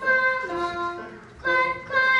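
A child's voice singing a children's song, a run of short held notes in a steady rhythm.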